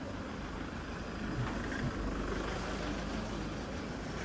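A motor vehicle's engine running close by, a steady low rumble, amid general street noise.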